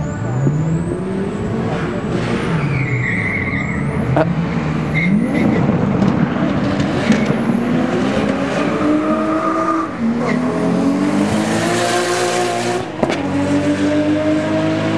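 Car engines on a drag strip revving and accelerating hard away from the line, the pitch climbing and dropping back at each gear change, several times over.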